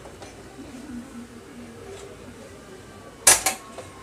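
A steel pot of sugar syrup lifted off a gas stove's metal pan supports gives a sharp double clank about three seconds in, with a brief ring after.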